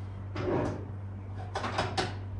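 A lower kitchen cabinet drawer sliding open, then a quick clatter of knocks as a metal stovetop waffle iron is taken out of it.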